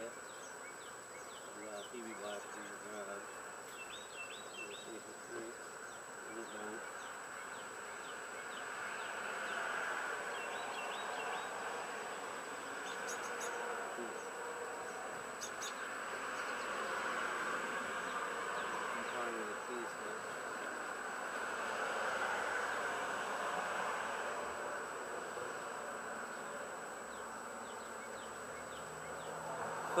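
Steady insect buzzing that swells and fades every few seconds.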